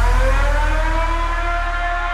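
Siren-like synth tone in an electronic dance remix, its pitch rising and then levelling off into a held note over a sustained deep bass.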